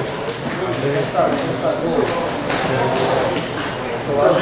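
Indistinct voices of several people talking and calling out in a large hall, with a few sharp knocks.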